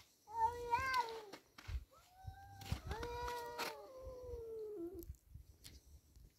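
Domestic tabby cat yowling in a quarrel with another cat. A short, wavering yowl about half a second in is followed by a longer drawn-out yowl that slides down in pitch at its end.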